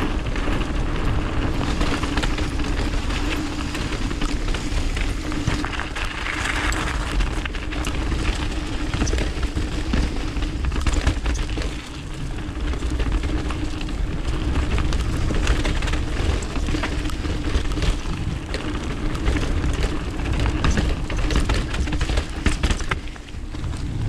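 Mountain bike riding fast down a dirt and gravel trail: continuous tyre rumble and wind noise on the camera mic, with many small rattles and clicks from the bike and loose stones, and a steady low hum.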